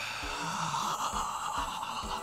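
A steady hiss-like noise from the film's soundtrack, with faint low tones underneath.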